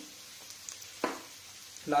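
Chopped onion, green chilli, ginger and garlic sizzling in oil in a heavy iron kadai over high heat: a faint, steady hiss, with one short click about a second in.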